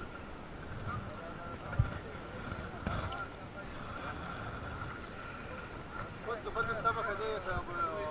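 Wind noise on the microphone with a faint steady hum, broken by two brief knocks around two and three seconds in. A voice talks in the last two seconds.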